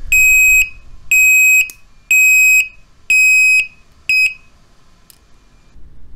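Built-in buzzer of a PATLITE SL08-M1KTB-Y signal beacon sounding a loud, high-pitched intermittent beep: about half-second tones once a second, five in all, the last one cut short, as the buzzer wire is connected to common.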